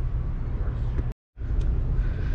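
Steady low background rumble, broken about a second in by a brief gap of dead silence where the recording is cut.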